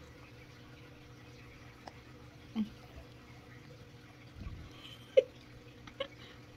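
A baby being spoon-fed, making a few brief small vocal sounds over a faint steady hum. The loudest is a short sharp squeak about five seconds in.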